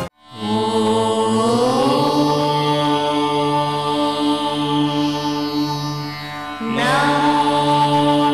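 Indian devotional music with long held, chant-like notes over a steady drone, one of them sliding upward early on. The sound cuts out for a moment at the very start, and a new phrase enters about seven seconds in.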